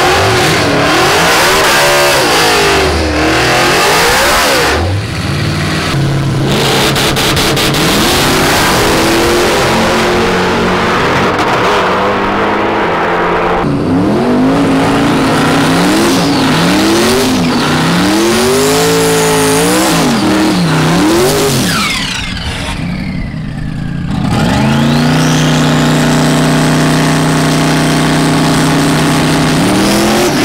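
Loud modified drag cars revving at the start line of a drag strip, the engine note rising and falling again and again. Later one engine holds a steady high rev with a rising whine.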